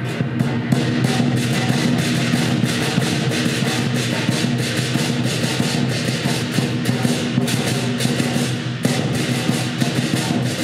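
Traditional lion dance percussion: a large lion drum beaten in a rapid, continuous rhythm with clashing cymbals and a gong ringing along.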